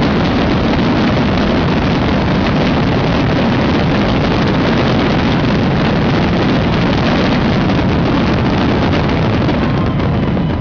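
A dense fireworks barrage: many bursts and crackles overlapping into one loud, steady, unbroken roar.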